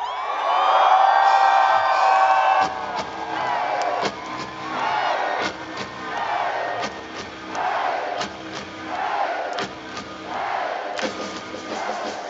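Live rock concert: a loud, long held yell opens, then a slow beat of drum hits with shouted vocal bursts about once a second over crowd noise.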